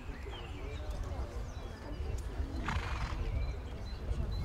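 A horse gives a short call, a brief noisy burst about three seconds in, over a steady low rumble and faint murmuring voices.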